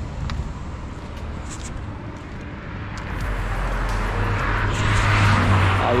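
A motor vehicle passing on the road, its engine and tyre noise growing louder over the last three seconds and loudest near the end.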